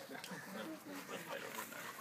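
Faint sounds of dogs at play over a rope toy, with quiet human voices in the background.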